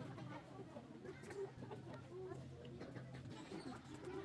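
Faint distant voices with a few chicken clucks over a low steady background hum.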